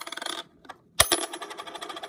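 A silver quarter clattering on a desk: a short ringing rattle at the start, then a sharp hit about a second in, followed by about a second of rapid rattling with a high metallic ring as the coin settles.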